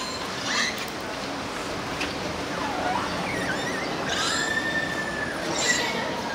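Killer whales (orcas) calling underwater, heard through the viewing-window glass: a series of high squealing calls and pitch-gliding whistles, with a long steady whistle about four seconds in and a short call near the end, over steady background noise.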